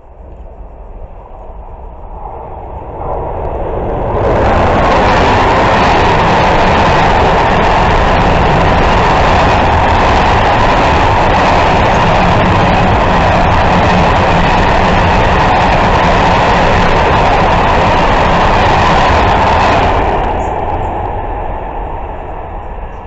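Electric freight train of covered wagons passing close by at speed: the rolling noise of wheels on rail builds over the first few seconds, stays loud and steady while the wagons go by, then dies away near the end.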